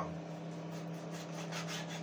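Kitchen knife sawing through raw pork on a wooden cutting board in a few faint strokes, over the steady hum of a running microwave oven.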